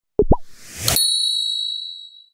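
Animated-graphic sound effect: two quick pops, the second sliding up in pitch, then a short rising whoosh and a bright, high chime about a second in that rings and fades away.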